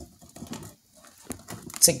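Light clicks and faint knocks of a plastic container and a drill being handled up close; the drill is not running.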